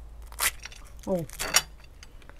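Crisp, syrup-soaked fried karakuş tatlısı pastry crackling and crunching as it is broken apart by hand, in two short bursts about a second apart, with a brief "oh" between them.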